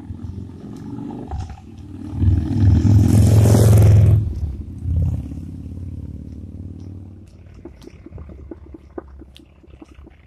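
A motorcycle engine approaching and passing close by, loudest about three to four seconds in, then fading away.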